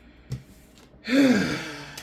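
A woman's long, breathy sigh about a second in, her voice rising and then falling in pitch. A short soft knock comes just before it.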